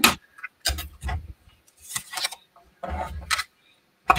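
Knocks and clatter of a stamp cut-and-emboss die-cutting machine being set in place and its clear plastic cutting plates handled, a short burst of noise about once a second.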